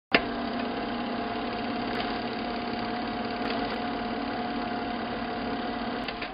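A steady mechanical drone, like an engine running at idle, with a constant hum in it; it starts suddenly at the very beginning and holds level.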